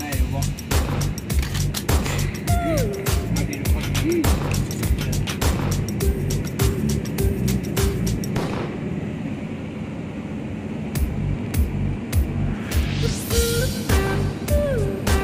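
Background music with a steady beat. Past the middle the beat thins out for a few seconds, then a rising sweep builds back in near the end.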